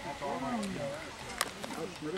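Faint voices of people talking in the background, with one light click about one and a half seconds in.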